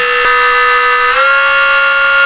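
Brushless electric-skateboard motor, driven by a FOCBOX Unity controller on a 14S battery, spinning at very high speed in a max eRPM test: a loud, steady high-pitched electric whine that steps up in pitch about a second in as the speed is raised another notch, near 90,000 eRPM.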